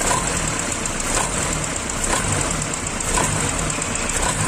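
Ford Laser's carbureted four-cylinder engine running with its exhaust pipe broken apart at the front resonator, so the exhaust is very noisy. The running is steady, with a light regular pulse about once a second.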